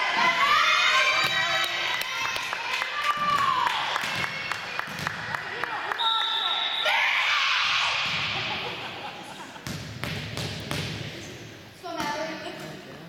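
Voices in a gym hall, then a volleyball bouncing repeatedly on a hardwood court. About six seconds in, a referee's whistle sounds once for about a second, signalling the serve, followed by crowd murmur.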